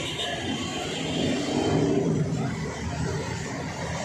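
Motor vehicle engine noise from road traffic, a steady rumble that swells a little in the middle and eases off.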